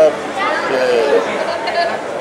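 Speech only: a man speaking hesitantly, drawing out a single word, with other voices chattering in the background.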